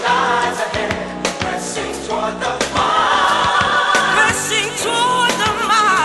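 Gospel mass choir singing with instrumental accompaniment: voices held in harmony over regular drum hits and a bass line.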